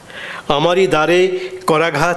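Speech only: a man reading aloud into a microphone, starting about half a second in after a short pause, with a brief break near the end.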